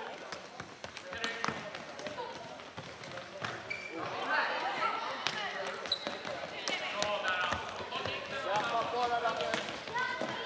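Floorball sticks and the plastic ball knocking on a sports-hall floor, sharp clacks scattered throughout. From about four seconds in, players and spectators are shouting.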